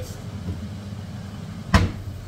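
An overhead kitchen wall cabinet being opened, with one sharp knock about three-quarters of the way through, from the cabinet door or from something inside it. A steady low hum runs underneath.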